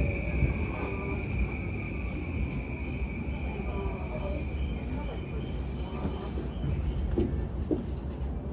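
JR Yamanote Line electric train heard from inside the car as it slows: a steady running rumble, with a high steady tone that fades out about halfway and faint whines gliding downward in pitch.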